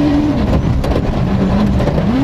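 Rally car engine heard from inside the cockpit on a gravel stage: revs held high, then falling about half a second in and staying lower as the driver lifts off for a slow corner, over a constant rumble of tyres on loose dirt, with a few sharp clicks about a second in.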